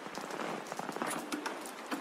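Soft rain patter with scattered crackles and no beat, an ambient sound bed in the quiet opening of a lofi track.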